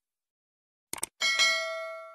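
Two quick clicks, then a bright bell ding that rings on and fades away: the subscribe-button and notification-bell sound effect of a channel intro.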